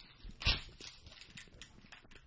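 Close-miked chewing and mouth sounds of people eating a coconut and chocolate snack bar: a run of small wet clicks, with one much louder click about half a second in.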